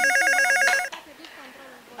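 Corded landline desk telephone ringing with a rapid warbling electronic trill, which cuts off just under a second in as the handset is lifted.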